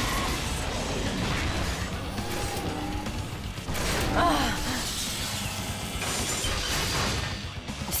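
Cartoon battle sound effects: ice shattering and crashing, mixed with dramatic background music.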